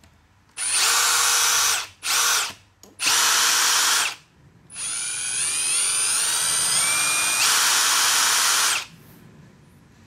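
Milwaukee M18 FUEL SURGE hydraulic impact driver run unloaded in four trigger pulls: three short bursts of whine, then a longer run of about four seconds whose pitch climbs as the motor speeds up before holding steady.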